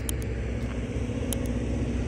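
A steady low engine rumble, with a few faint, short high clicks over it.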